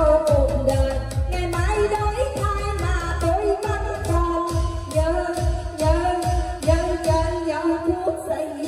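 Singing into a microphone over a loud amplified backing track of Vietnamese pop music with a steady thumping bass beat, played through a party PA system.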